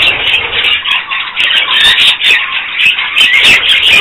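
A flock of budgerigars chattering and warbling: a dense, continuous run of short high chirps and squawks.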